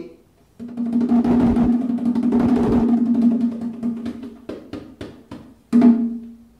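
Bongo drums played by hand: a fast roll on the hembra, the larger and deeper-pitched of the pair, ringing steadily for about four seconds. It is followed by a few separate strokes and a louder stroke near the end.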